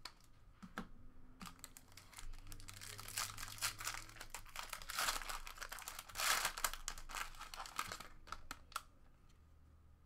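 Foil trading-card pack wrapper being crinkled and torn open by hand: a run of crackling starts about a second and a half in, is loudest around the middle, and dies down near the end.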